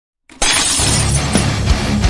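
Glass-shattering sound effect that cuts in suddenly about a third of a second in, its bright crash fading over the next second, over the start of a rock intro track with a steady drum beat.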